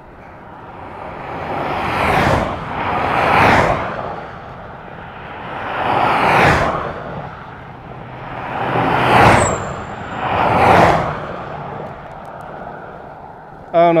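Vehicles driving past one after another on an asphalt road: about five swells of tyre and engine noise, each rising and fading within a couple of seconds, the first two close together.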